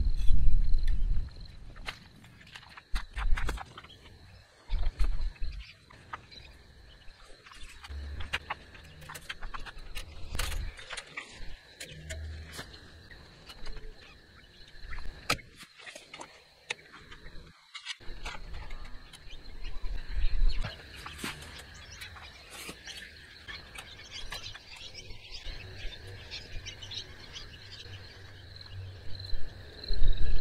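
Insects chirring steadily in long grass. Through it come scattered sharp clicks and rustles, with short low bumps, from barbed wire being handled at the fence posts.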